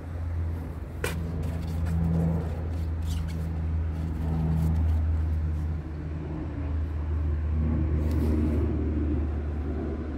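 DAF CF truck's Euro 5 diesel engine idling steadily, a low even hum, with a few short clicks as the coolant expansion tank cap is unscrewed.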